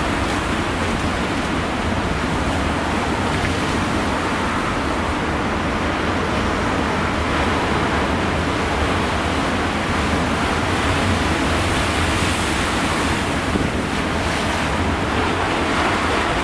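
Heavy storm surf breaking over rocks and against a harbour wall: a loud, steady rushing wash of water with no separate crashes standing out, and wind rumbling on the microphone underneath.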